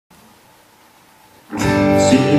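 Faint room tone, then about a second and a half in, guitar music starts abruptly: the instrumental opening of a song, with sustained notes ringing.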